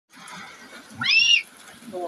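A young child's short, high-pitched squeal about a second in, rising and then falling in pitch, over low voices.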